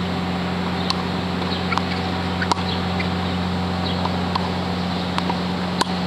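Small birds chirping over a steady low hum, with two sharp knocks from tennis balls being hit, about two and a half and six seconds in.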